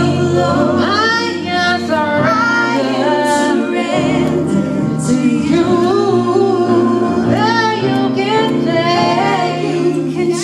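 A girl singing a gospel song into a microphone with sliding, ornamented runs, over steady held chords low in pitch.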